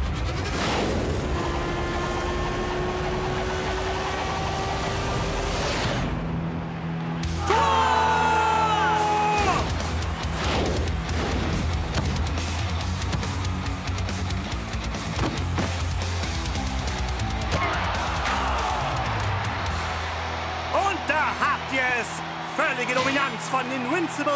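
Stadium crowd cheering, then dramatic background music with a steady low pulse from about six seconds in. Brief shouting voices rise over it about eight seconds in and again near the end.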